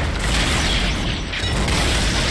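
Loud, dense action-film sound mix: a continuous din of rapid automatic gunfire and chaos, with a heavy low rumble underneath.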